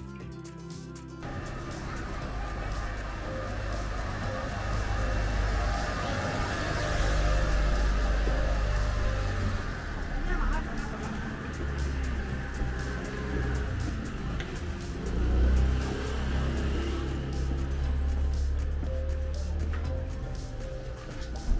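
Background music cutting off about a second in, then outdoor street sound from a camera carried on foot: a shifting low rumble with traffic and voices.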